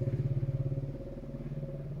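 A small engine running steadily, a low hum with a fast, even pulse, slightly louder in the first second.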